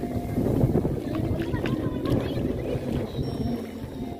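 Small waves washing up onto a sandy beach, heard through wind noise on the microphone.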